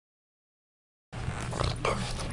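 Silence, then a little over a second in a Frenchton (Boston terrier–French bulldog mix) starts making short vocal sounds at a steam iron, two of them near the end, over a steady low hum.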